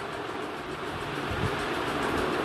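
Steady background noise: an even rushing hiss, like a fan or air conditioner, with no pitch or rhythm.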